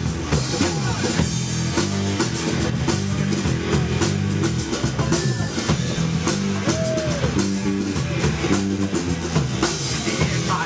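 Live rock band playing an instrumental passage without singing: a drum kit keeping a steady beat under electric guitar and sustained low notes.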